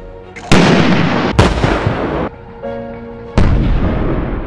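Three heavy blasts with long rumbling tails: two close together in the first half, about a second apart, and a third near the end. Background music plays in the gap between them.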